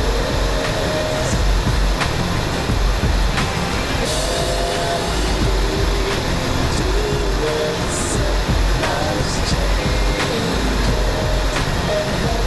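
Jeep driving slowly over a snow-packed trail, heard from inside: a steady, uneven low rumble of engine and tyres, with occasional knocks and rattles from the body. Faint music plays underneath.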